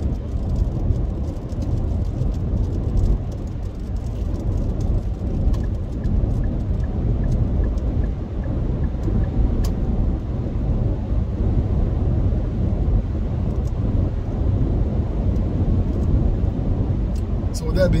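Steady low road and engine rumble heard from inside the cabin of a moving car.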